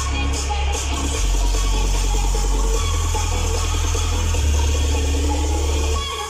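Dance music played loud through a truck-mounted DJ sound system with 12 bass speakers, its heavy bass line stepping to a new note about every second and a half.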